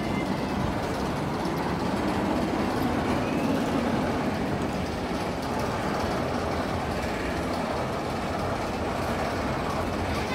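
Mine-train roller coaster train (El Diablo – Tren de la Mina) running along its steel track: a steady rolling noise.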